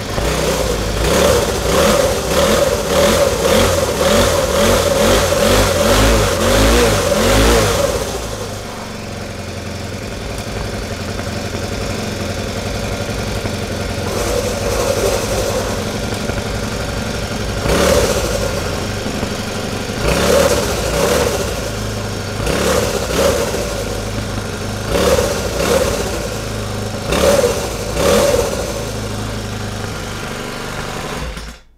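A small Honda petrol engine on a homemade scooter, revved hard for about the first eight seconds, then settling to an idle. In the second half it gets five short throttle blips.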